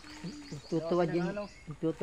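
People's voices talking indistinctly, loudest about a second in, over a row of short, repeated high-pitched chirps.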